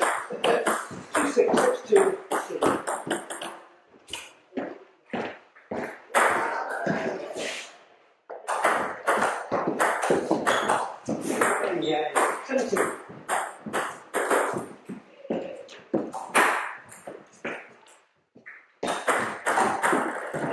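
Table tennis rallies: the celluloid-type ball clicking off bats and bouncing on the table in quick runs of sharp ticks, several a second, in an echoing hall, with people's voices in between.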